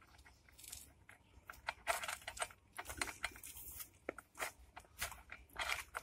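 Faint, irregular small clicks and scrapes of metal parts being handled: a brush cutter's three-tooth steel blade and its retaining nut being turned and tightened by hand onto the gearhead.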